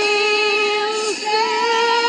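A high singing voice holds a long note with a slight waver, breaks off it about a second in, then holds a slightly higher note, with music behind it.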